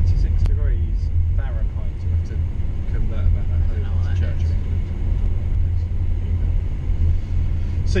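Steady low rumble inside a moving car's cabin, from the engine and road, with a few quiet words spoken early on and in the middle.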